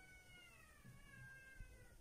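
A faint, drawn-out high call that slides slowly down in pitch for about two seconds and then stops.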